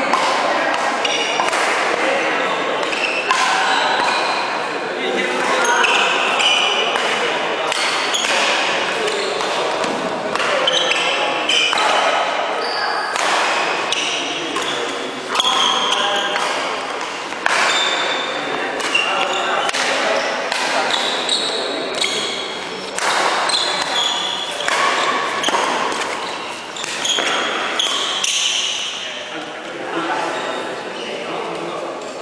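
Badminton being played in a large hall that echoes: repeated sharp racket hits on the shuttlecock, sneakers squeaking on the wooden court floor, and voices in the background.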